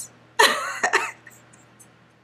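A woman's short cough-like burst of laughter, about half a second in.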